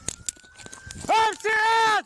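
Police body-camera audio: scattered knocks and clicks, then, about a second in, a loud shouted voice in two drawn-out calls.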